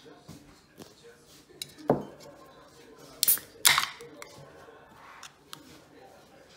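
A knock about two seconds in, then a ring-pull beer can of Sapporo SORACHI 1984 being opened: two sharp cracks with hisses of escaping gas in quick succession, the second the loudest.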